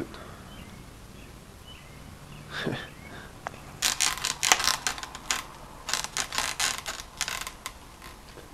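Footsteps crunching and shuffling on dry leaves and broken debris on a bare floor: a run of irregular crackles and snaps beginning about four seconds in.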